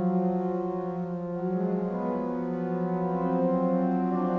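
Pipe organ playing sustained chords over a held low note, the upper notes of the chord moving upward about halfway through.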